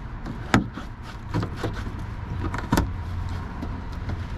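Flathead screwdriver prying open a plastic push-pin clip in a pickup's fender liner: small scraping and ticking, with a sharp click about half a second in and another a little before three seconds, over a low steady rumble.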